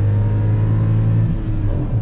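Ford Ka's 1.0 three-cylinder engine, heard from inside the cabin, running at high revs in a lower gear just after a downshift: a steady engine note that thins out and drops in level about one and a half seconds in as the revs ease.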